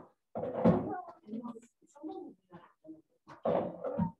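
Indistinct voices talking in short, broken phrases, with no clear words.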